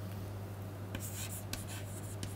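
Chalk writing on a chalkboard: short, light scratching strokes starting a little past halfway, over a steady low hum.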